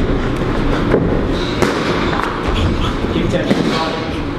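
Boxer's shoes thudding and shuffling on a boxing-ring canvas during shadowboxing, with a few sharp knocks and a constant low rumble. Indistinct voices can be heard in the background.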